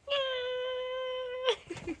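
A woman's voice imitating a cat: one long, steady, high "nyaa" meow held for about a second and a half, followed by a short grunt near the end.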